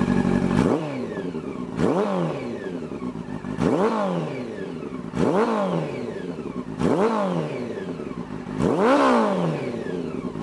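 Honda CB400 Super Four's inline-four engine being blipped through an aftermarket slip-on muffler with its baffle removed. It idles briefly, then revs six times in quick throttle blips, each pitch rising sharply and falling back toward idle, about every one and a half to two seconds.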